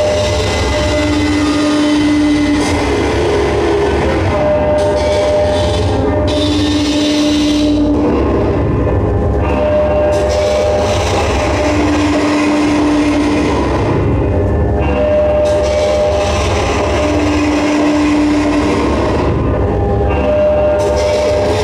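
Live metalcore band playing loud, with heavily distorted guitars and bass and drums. Over the din, held notes alternate between a higher and a lower pitch an octave apart, each lasting about a second and a half and coming round every few seconds.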